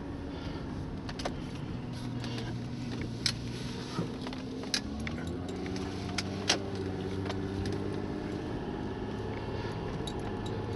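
Car engine and road noise heard from inside the cabin while driving. The engine note shifts and rises about five seconds in as the car picks up speed, and a few sharp clicks or rattles inside the car stand out above it.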